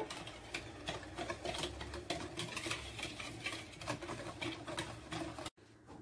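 Metal balloon whisk beating cocoa into cake batter in a bowl: rapid, irregular clicking of the wires against the bowl, cutting off suddenly about five and a half seconds in.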